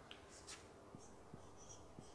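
Faint strokes and light squeaks of a marker pen writing on a whiteboard.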